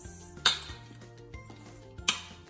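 A metal tablespoon stirring raw chicken pieces in a stainless steel bowl, with one sharp clink against the bowl about half a second in. Background music plays underneath.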